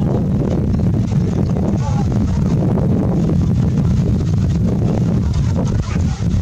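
Wind buffeting the microphone: a loud, steady low rumble, with faint voices underneath.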